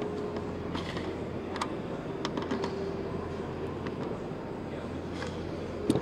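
Steady background noise of a large exhibition hall with a faint held hum, and a few light clicks as a hand nut driver turns hex nuts down onto the antenna plate's mounting studs.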